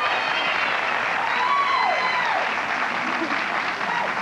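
Studio audience applauding steadily, with a voice or two rising over the clapping.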